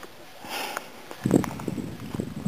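A man breathing hard and sniffing, short of breath at high altitude. A soft hiss of breath comes about half a second in and a louder puff of breath about a second and a quarter in.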